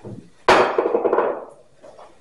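A glass oil bottle set down hard on a stone countertop: one sharp clank about half a second in, ringing briefly as it dies away.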